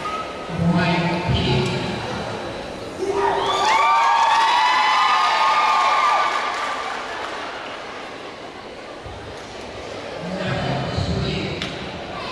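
Crowd of spectators cheering, with a loud burst of many high-pitched voices for about three seconds in the middle and lower-pitched voices calling out about a second in and near the end.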